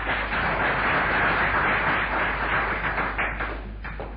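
Audience applauding, a dense clatter of clapping that dies away shortly before the end.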